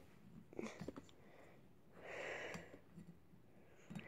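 Quiet room with a few faint clicks in the first second and one soft breath, about two seconds in.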